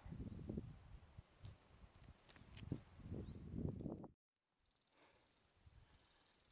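Irregular footsteps on a dirt path and rustling against low shrubs while walking uphill, with small bumps from the hand-held camera. About four seconds in it cuts off suddenly, giving way to faint outdoor ambience with a faint, steady, pulsing insect trill.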